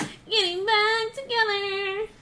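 A woman singing a short phrase without accompaniment: she slides up into one held note, breaks briefly, then holds a second note that stops just before the end.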